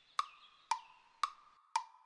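Wood-block ticks in a steady beat of about two a second, four in all, each a sharp click with a short pitched ring, a clock-tick timer sound effect.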